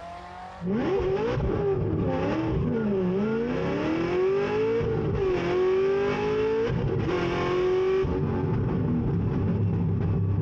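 Supercharged LS9 V8 of a C6 Corvette ZR1 launching at full throttle, cutting in loud less than a second in. The tyres break loose off the line, so the revs surge and sag unevenly for the first couple of seconds, then the engine climbs through the gears with a drop in pitch at each shift, about five, six and a half and eight seconds in, heard from inside the cabin.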